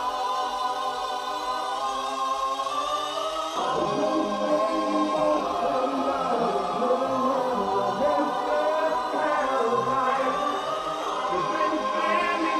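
Electronic dance music in a breakdown: sustained choir-like vocal chords with no kick drum, and a fuller, lower layer of chords coming in about three and a half seconds in.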